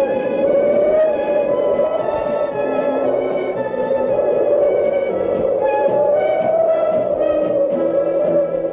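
Film-score background music: a slowly wavering, gliding tone like a theremin runs through it, over short, steady notes from other instruments.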